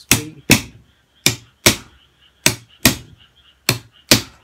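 Drumstick strikes on a white-cloth-covered drum playing a slow shuffle: the middle note of each triplet is left out, so the strokes fall in long-short swung pairs, about one beat every 1.2 seconds. Each stroke is a sharp hit with a short ring.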